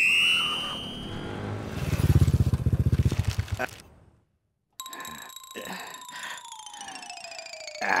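Comic film sound effects: a whistle-like tone that glides upward, then a fast low rattling roll lasting about two seconds. After a brief silence comes a long tone that slides slowly down in pitch, with a few light knocks under it.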